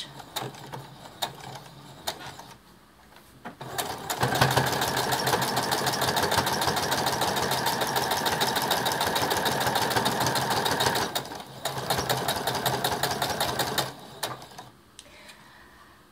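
Brother sewing machine with a walking foot stitching through a towel hem: a few scattered stitches at first, then a fast, steady run of needle strokes for about seven seconds, a brief stop, and a few seconds more of stitching before it stops near the end.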